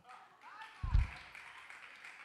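A single short, low thump a little under a second in, with faint voices from the congregation around it.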